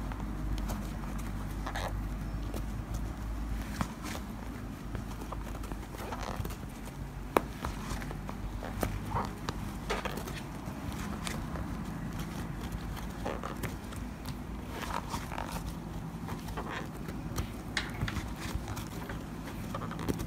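Crochet hook and jumbo cord being worked through the holes of a leather bag base: irregular small clicks and rubbing of cord as stitches are pulled through, over a faint steady low hum.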